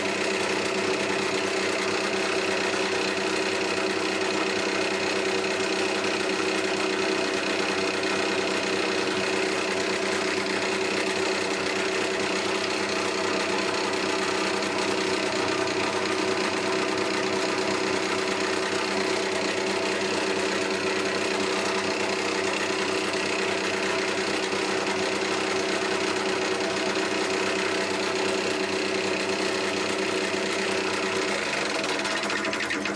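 An old wood lathe running at a steady speed with a constant mechanical hum and rattle, while a skew chisel is worked along a spinning ash spindle.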